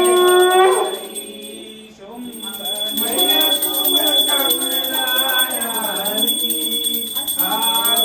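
Hindu devotional aarti singing with music. A long held sung note breaks off within the first second, and after a short lull the voices pick up again.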